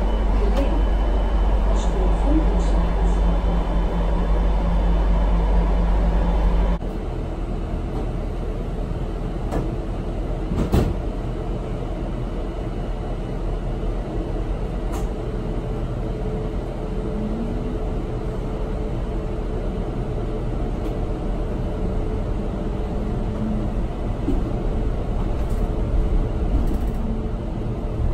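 Cabin sound of a VDL Citea electric bus: a steady low rumble of the ride with no engine note. About seven seconds in it cuts abruptly to a quieter steady hum with a faint whine, and a single sharp knock a few seconds later.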